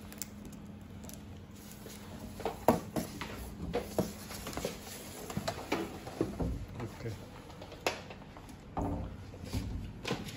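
Scattered light knocks and clicks from hands handling an audio mixing console, with indistinct voices in the background.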